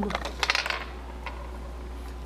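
A quick cluster of light clicks about half a second in, small hard parts being picked up and handled on a tabletop, over a steady low hum.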